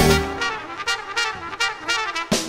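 Jazz big band playing a contemporary bossa nova arrangement. After a full-ensemble hit at the start, the bass end drops away and the horns carry a lighter, higher passage with a few short accents. The full band comes back in just after.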